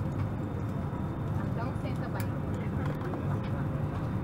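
Steady low hum inside an Airbus A320 cabin at the gate, the aircraft's ventilation and systems running with a faint steady tone over the rumble. Passengers' voices murmur indistinctly underneath.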